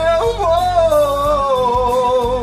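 A man singing one long held vowel over a backing track, with a quick ornamental flip in pitch just after the start, then sliding down to a lower note about a second in.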